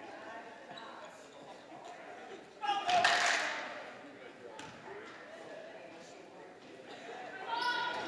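A basketball bounced on a hardwood gym floor during a free throw, with a loud shout from the crowd about three seconds in and crowd voices rising near the end as the shot goes up.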